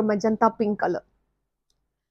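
A woman speaking for about a second, then a sudden cut to dead silence.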